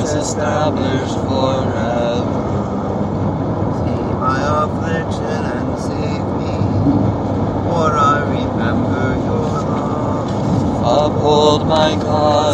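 Voices reciting psalm verses in short phrases, over a loud, steady rumbling background noise.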